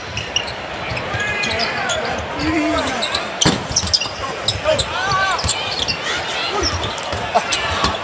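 Basketball dribbled on a hardwood court, the bounces coming in short runs over steady arena crowd noise, with one louder strike about three and a half seconds in.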